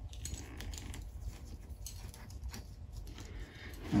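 Faint rustling and a few soft clicks of a leather strap being pulled through a slot cut in the leash, over a low steady room hum.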